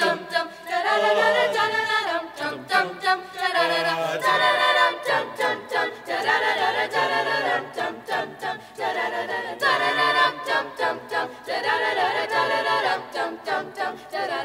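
High school mixed-voice choir singing a cappella, several voices in harmony with notes changing every second or so.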